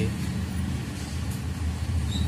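Steady low rumble of a running engine or motor traffic in the background.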